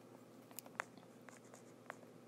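Stylus tapping and sliding on a tablet's glass screen while handwriting letters: a few faint, irregular clicks over quiet room hiss.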